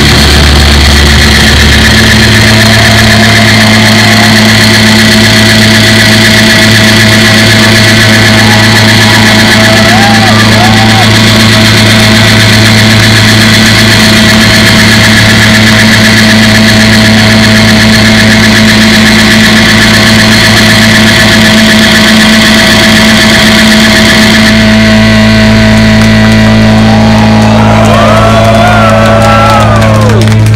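Loud sustained drone of electric guitars through amplifiers, feedback tones held unbroken at the close of a punk-rock set. The highest tones drop out about 25 seconds in, and shouts from the crowd rise over the drone near the end.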